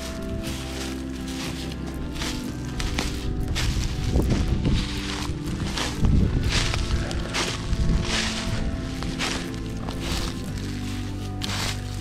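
Footsteps through dry fallen leaves, about two steps a second, with leaf rustling, over steady background music.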